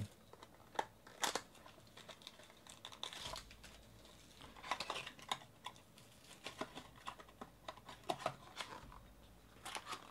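Plastic wrap on a small card-pack box crinkling and tearing as it is pulled off, with scattered light clicks of cardboard being handled.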